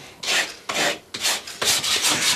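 Sandpaper on a hand sanding block rubbed briskly along a thin wooden strip, in quick back-and-forth strokes of about three a second.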